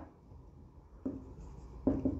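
Felt-tip marker writing on a whiteboard: faint scratchy strokes starting about a second in, with a sharper stroke near the end.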